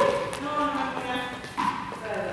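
Men's voices talking in a gym hall, with a faint click or two.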